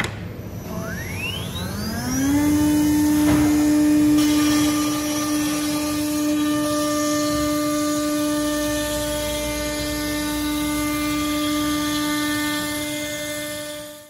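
CNC router spindle spinning up with a rising whine over about two seconds, then running at a steady high-pitched whine with overtones. The sound fades out at the very end.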